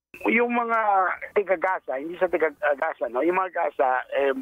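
A man speaking in Tagalog over a phone line, his voice thin and missing its upper range.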